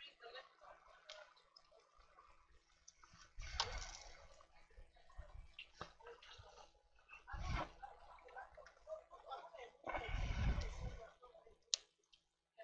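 Hands working on a laptop's plastic bottom case with a small screwdriver: scattered light clicks and scrapes, with three louder bursts of handling noise.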